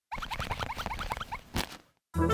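Cartoon sound effect of plastic ball-pit balls shifting and tumbling: a rapid patter of small clicks laced with short rising squeaky blips, then one sharper click about a second and a half in.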